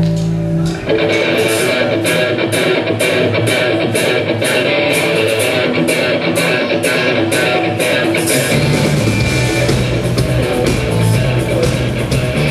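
A rock band playing live: electric guitars strummed over bass and drums. About a second in, the music changes from a held chord to a steady strummed part, and the bass grows stronger about two-thirds of the way through.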